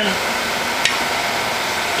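Steady background room noise with a single sharp click a little under a second in.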